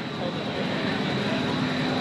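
Steady ambient rush of a large exhibition hall with faint, indistinct voices in the background.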